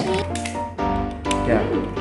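Background music with held notes, over a few light clicks.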